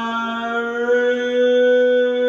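A man's voice holding one long sung note, steady in pitch, over a faint instrumental backing.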